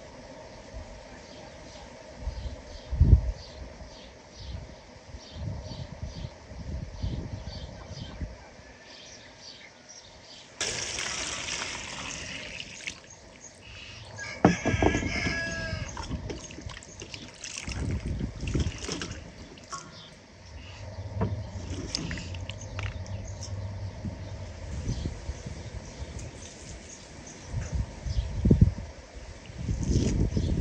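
Outdoor food-preparation sounds: peeled onions sloshed and rubbed by hand in a metal bowl of water, with scattered knocks on the wooden table. A rooster crows once, about halfway through.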